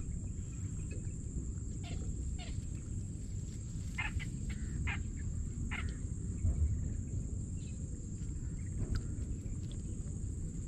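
Outdoor field ambience: a steady high-pitched insect drone over a constant low rumble, with a scattering of short chirps from small animals.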